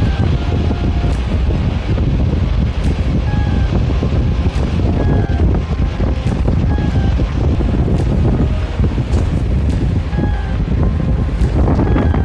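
Wind buffeting a smartphone microphone, a steady low rumble, with a few faint short high tones now and then.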